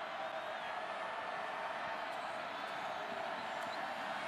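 Large stadium crowd making a steady, even din of many voices.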